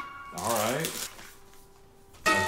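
A plastic wrapper crinkling briefly as a small packaged item is handled, then a low voice sliding up in pitch, over background music that fades to a faint held note.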